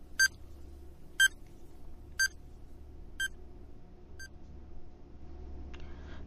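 Countdown timer sound effect: five short, high electronic beeps, one a second, the last two fainter, over a faint steady low hum.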